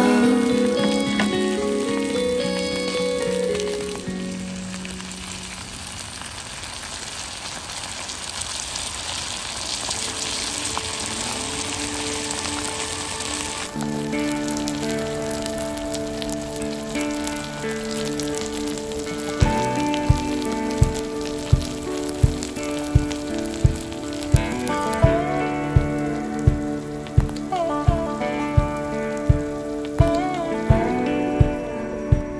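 Sliced potatoes and butter sizzling as they fry on a hot griddle pan, the hiss clearest in the first half. Background music plays over it and takes over about halfway through. From about two-thirds of the way in it has a steady drum beat of roughly one thump every three-quarters of a second.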